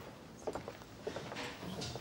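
Faint restaurant background with scattered light clicks and knocks, like crockery, cutlery and footsteps.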